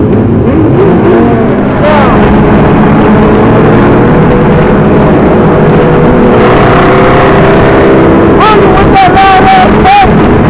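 A group of sport motorcycles riding at speed, engines running with wind noise on the camera microphone. The engine pitch rises and falls near the start and again near the end, with a steadier drone in between.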